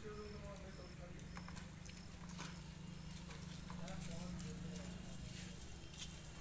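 A small engine, likely a motorcycle's, running at a steady low idle, with faint voices and occasional knocks around it. A run of short high beeps repeats about every half second until about two seconds in.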